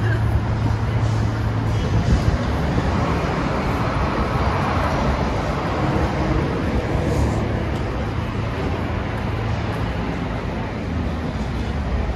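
Street ambience: a steady wash of motor-vehicle traffic noise with a low hum, swelling a little in the middle as a vehicle passes, and passers-by's voices now and then.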